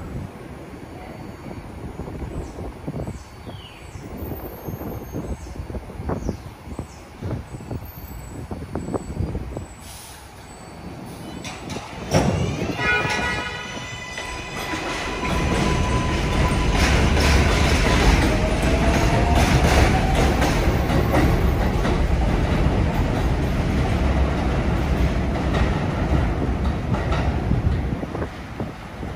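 New York subway R142A train on an elevated steel structure. For the first twelve seconds there are scattered clicks of wheels over rail joints. A short series of rising pitch steps and then a climbing whine from the traction motors follow as the train gathers speed, over a loud rumble of wheels with high squeal.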